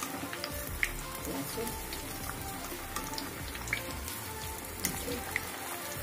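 Besan-battered tomatoes deep-frying in hot oil in a kadai, a steady sizzle with scattered crackles as they are gently turned with a wire skimmer.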